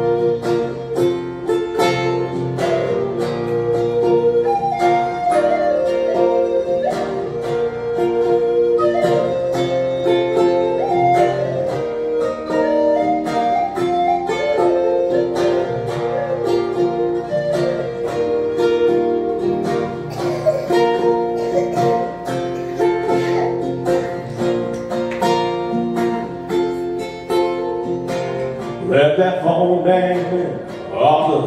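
Wooden Native American flute playing a slow, gliding melody over a steady strummed acoustic guitar rhythm. The flute stops near the end as the guitar carries on.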